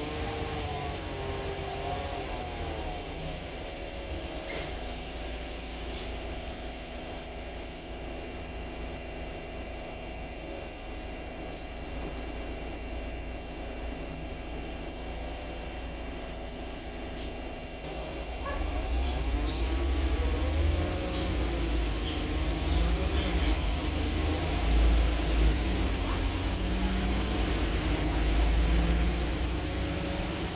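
Inside a Volvo B8RLE single-deck bus on the move: a steady low diesel engine and road rumble with a whine that wavers up and down in pitch. About two-thirds of the way in it grows louder and deeper as the bus picks up speed.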